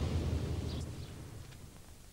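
A low rumble that fades away steadily over about two seconds.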